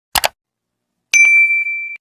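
A quick double mouse-click sound effect, then about a second in a single bright bell ding that rings on and slowly fades.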